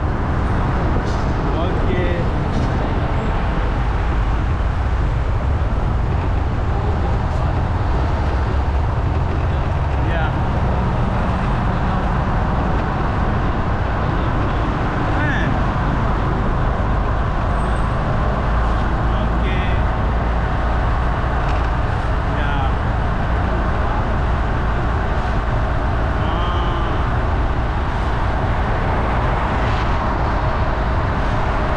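Steady wind and road noise from a camera mounted on a moving motorcycle, with the motorcycle running and city traffic around it.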